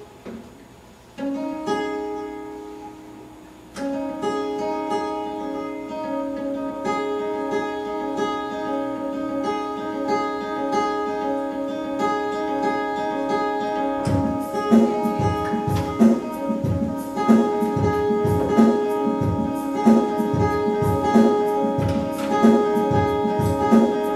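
Mountain dulcimer picked through a looper: a few single ringing notes, then from about four seconds in a repeating melody layered over held notes. About fourteen seconds in, a looped beat of low knocks, about two a second, joins in.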